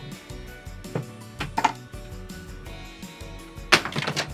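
Quiet background music with held notes, broken by a few light handling clicks and, near the end, one brief loud rasp as a paper card is pulled off the wall display.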